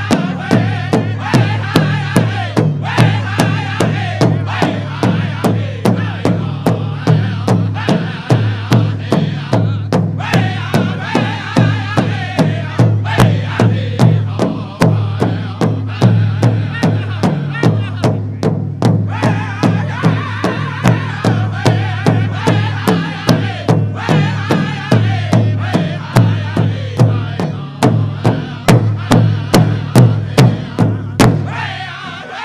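Pow wow drum group singing: several men's voices chanting together over a big powwow drum struck in unison in a steady beat.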